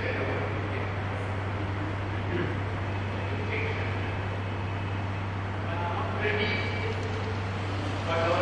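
Faint, indistinct speech over a steady low hum and constant hiss from the recording.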